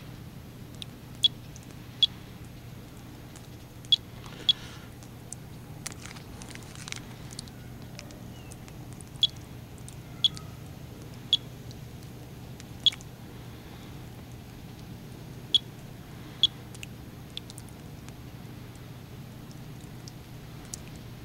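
Monitor 4 Geiger counter clicking at random intervals, about ten sharp clicks in twenty seconds. This is a background count of roughly 20 to 30 counts per minute.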